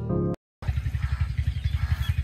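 A short music sting ends abruptly about a third of a second in and is followed by a brief dead gap. After that an engine idles in the background with a steady, low, rapid putter.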